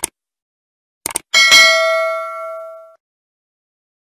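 Subscribe-button animation sound effect: a short click at the start, a quick double click about a second in, then a bright notification-bell ding that rings out and fades away over about a second and a half.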